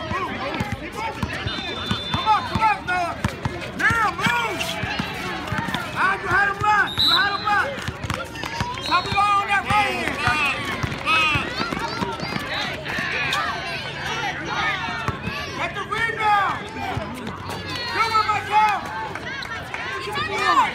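Outdoor basketball game: overlapping shouts and calls from players and spectators, with running footsteps and the ball bouncing on the court.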